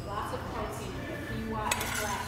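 Metal spoon scraping and knocking in a stainless steel saucepan as cooked quinoa is scooped out, with a sharp clink near the end.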